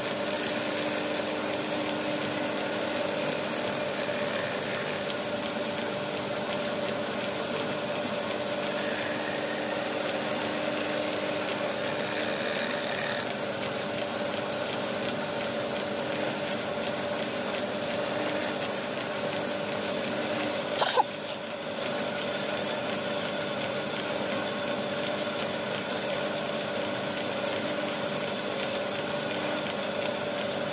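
Motor-driven lathe spindle running steadily with a small sanding disc on its tip while a wooden mortar is worked against it. A higher whine comes and goes in the first half, and a single sharp knock sounds about two-thirds of the way through.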